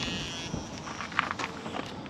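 Water running through the RV's city water inlet and supply line, a high hiss with a tone in it that fades out about half a second in as the line fills, followed by a few faint clicks of the fitting being handled.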